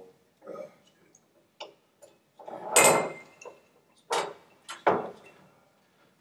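Drinking glasses and lemon wedges handled on a table: scattered knocks and clicks, the loudest and longest about three seconds in, then two sharp knocks near the end.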